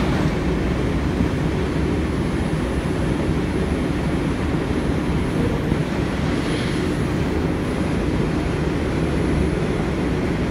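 A New York City Subway 2 train running at speed on elevated track, heard from inside the car: a steady rumble of wheels on rail and motors.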